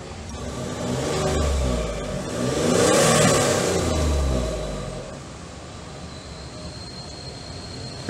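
Land Rover Discovery's 3-litre turbocharged V6 diesel engine coming up in revs for a few seconds, rising and falling in pitch. It then settles to a steady, quieter idle about five seconds in.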